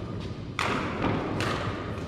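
Two badminton racket strikes on a shuttlecock during a rally, sharp hits a little under a second apart, the first about half a second in, with a short echo after each.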